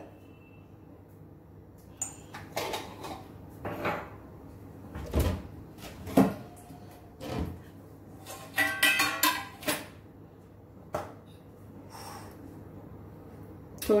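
Scattered clicks, knocks and clatters of kitchen containers being handled on a stone countertop: a glass spice jar set aside and a round steel spice box brought in, with a close cluster of clatters about two-thirds of the way through.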